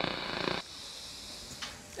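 TV static hiss used as a sound effect. It stops suddenly about half a second in, leaving a fainter hiss.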